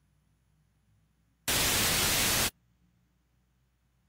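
Near silence broken, about one and a half seconds in, by a burst of even static hiss about a second long that starts and cuts off abruptly.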